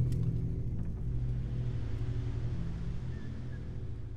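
Low, sustained rumbling drone from a film trailer's soundtrack, a few steady deep tones held together, fading out slowly.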